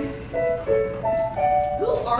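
Keyboard playing a short phrase of clean, held single notes, one after another, as musical-theatre accompaniment. A voice comes in near the end.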